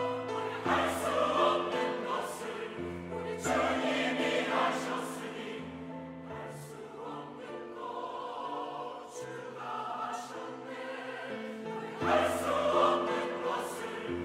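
Mixed church choir of men and women singing a sacred choral anthem in held chords. It goes softer in the middle and swells louder again about twelve seconds in.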